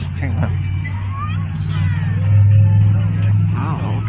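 A steady low engine hum, growing louder about two seconds in, with distant crowd voices over it.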